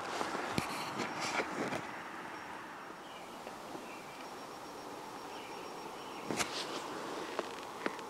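Quiet outdoor ambience with a few short crunching footsteps on loose broken rock: several in the first two seconds and a louder one about six and a half seconds in.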